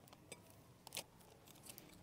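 Near silence, with a few faint clicks and light rustles, the clearest about a second in, from hands handling a clear plastic sheet and a paratha on a plate.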